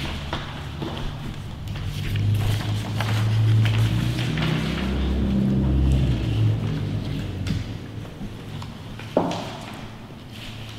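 Paper rustling and pages being handled around a meeting table, with a low rumble that swells in the middle and fades. A single sharp knock comes near the end.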